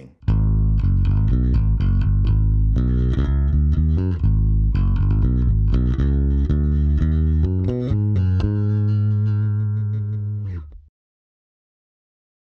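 Electric bass guitar played through a Bergantino Super Pre bass preamp: a run of plucked notes, ending on a held note that rings for about two seconds and then cuts off abruptly.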